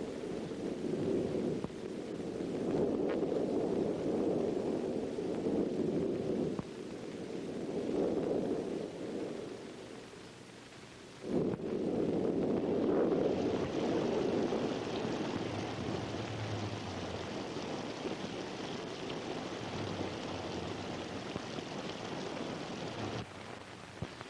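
Storm wind rising and falling in gusts, with a dip and a sudden return about halfway through. After that a steady higher hiss, like rain, runs under it.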